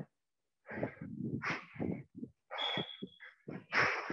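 A squash player breathing hard in several loud huffs, out of breath from a fast footwork drill. A short high squeak sounds about two and a half seconds in.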